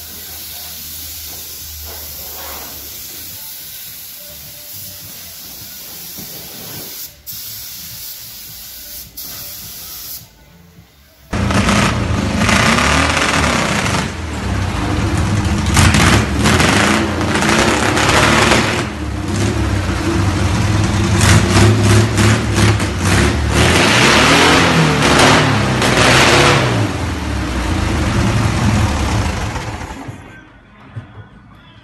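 A spray gun hissing steadily as paint is sprayed onto a car body. After a break about 11 seconds in, an air-cooled VW Beetle flat-four engine starts loudly and is revved up and down, running rough and loud for the rest of the time.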